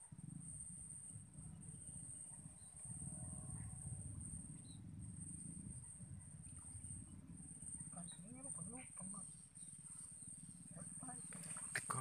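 Quiet outdoor ambience: a steady low rumble and a thin, steady high-pitched whine, with faint distant voices a few times in the second half.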